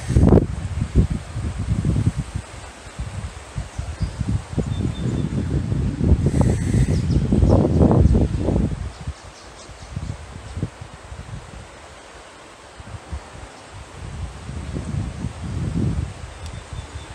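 Wind gusting on the microphone, a low rumbling rush that swells at the start and again from about six to nine seconds in, then eases off.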